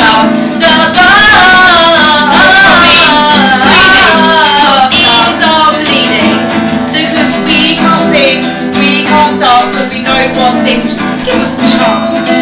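A woman singing over two strummed guitars, a nylon-string acoustic and an electric; the sung melody is clearest in the first half, with choppier strummed chords after.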